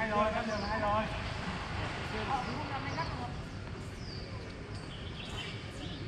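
A person's voice calling out in the first second, then birds chirping in short, falling high notes about once a second, over a steady low outdoor background noise.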